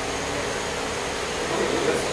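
A steady rushing noise with a faint high steady tone, like air or a machine running, with no distinct events.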